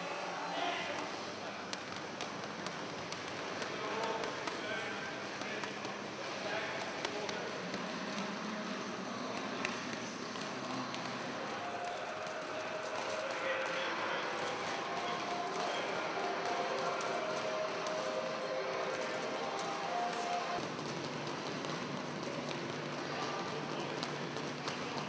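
Group boxing training in a large room: indistinct voices calling out over scattered sharp slaps of gloves hitting pads.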